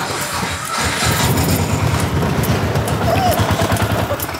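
An auto-rickshaw's small engine starting up and running with a fast, even putter that sets in about a second in.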